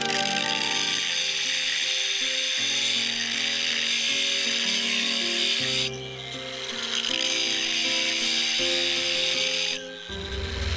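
Angle grinder with an abrasive cut-off disc cutting into a rusty steel bar: a high-pitched grinding that breaks off briefly about six seconds in as the disc is lifted, resumes, and stops just before the end. Background music plays throughout.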